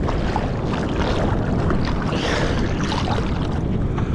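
Water rushing and splashing around a surfboard's nose as it is paddled through chop, with wind rumbling on the board-mounted microphone and small scattered splashes.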